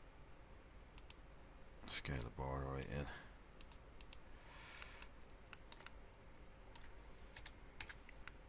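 Sparse computer keyboard and mouse clicks, single taps scattered through, with a short hummed vocal sound, like an "um", about two seconds in.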